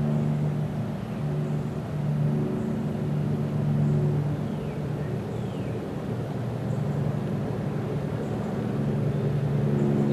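An engine running steadily, heard as a low hum that swells and eases slightly in level, with a couple of faint short chirps about halfway through.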